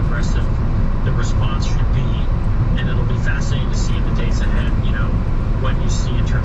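Steady low road and tyre rumble inside a car driving on a rain-soaked freeway, with faint talk from a news broadcast over it.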